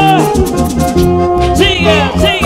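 Live band music: a lead on an electro-acoustic nylon-string guitar, held notes wavering with vibrato, over bass and percussion keeping a steady beat.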